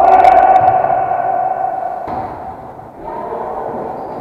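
A long, drawn-out shout held on one pitch, fading out about two seconds in, then a fainter held call near the end.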